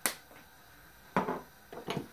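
A single sharp click as a spice jar and measuring spoon are handled.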